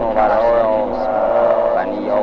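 A sampled speaking voice fed through a Buchla 288v modular synthesizer module, heard as a smeared, wavering pitched sound of overlapping layers rather than clear words.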